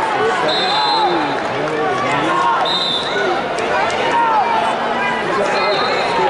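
Many voices shouting and calling over one another in a large hall: the crowd and coaches during a wrestling bout. Three brief high squeaks cut through the shouting.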